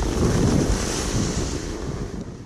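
Wind buffeting an action camera's microphone while riding down a ski slope, with a steady hiss of snow under the snowboard; it grows a little quieter near the end.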